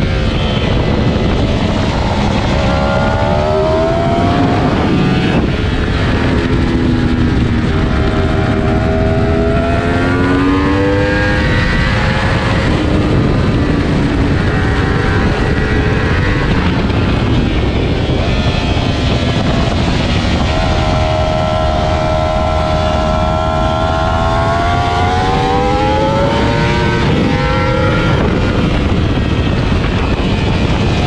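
Yamaha R1's inline-four engine at racing speed, its pitch climbing under hard acceleration and dropping back several times as it shifts and brakes for corners. Heavy wind noise over the onboard microphone.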